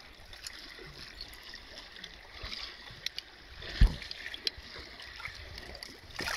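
River water lapping and sloshing at the shore as a hand moves in it, reaching for a chunk of floating ice. A few light clicks and one low thump a little past the middle stand out.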